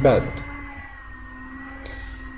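A man's voice finishes a word, then pauses over a low steady electrical hum, with one faint click near the end.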